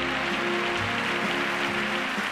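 Audience applauding steadily, with music playing long held notes underneath.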